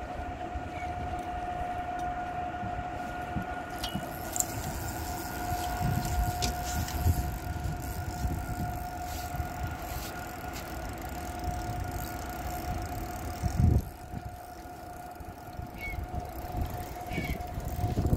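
Steady mechanical whine over a low rumble from the fishing boat's running machinery, with a few light clicks and one loud thump about fourteen seconds in.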